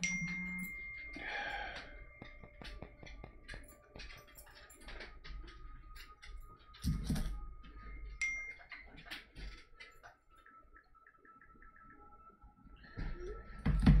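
Irregular small clicks and taps, with dull thumps about seven seconds in and near the end, over a faint steady high tone.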